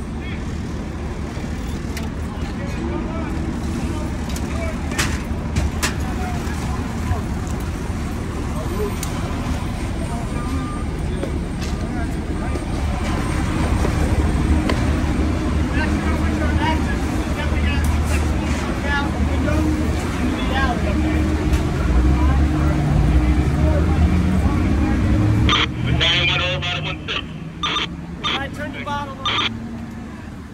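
Fire trucks' diesel engines running with a loud, steady low rumble, one engine rising in pitch a few seconds before the end. Voices and clicks come in over it in the last few seconds.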